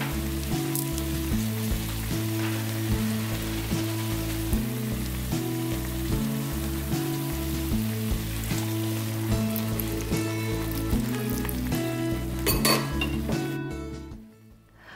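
Beef and onions sizzling in a hot frying pan, a steady hiss, with a brief burst of louder crackling near the end, over background music.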